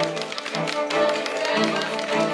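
Small live string ensemble of violins and cello playing sustained notes, with many quick light taps over the music.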